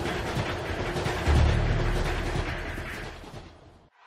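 A rushing noise with a dull low boom about a second in, fading away to silence near the end.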